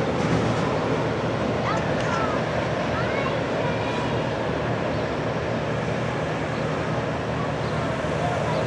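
Steady rumble of a freight train's last cars rolling away down the track, with a few short bird chirps in the first half.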